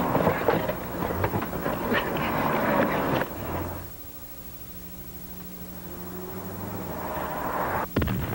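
Car on the move with a window open: rushing wind and road noise with rattles for about three seconds, then a quieter, steady engine hum that slowly builds. A sudden break comes at the very end.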